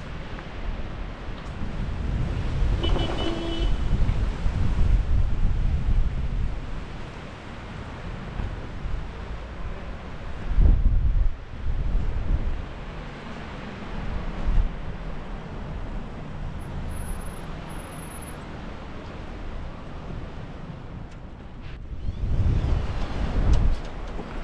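Strong gusty wind buffeting the microphone: a low rumble that swells and drops, with the loudest gusts about ten seconds in and again near the end.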